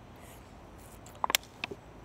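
A few sharp plastic clicks from a crushed disposable water bottle as air is blown into it to pop it back into shape, coming in a quick cluster a little over a second in and once more shortly after.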